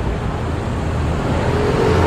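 Steady road traffic noise with a low engine rumble.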